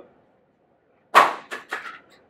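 A coin being flipped and landing: one sharp knock a little past the first second, then two lighter knocks close behind it.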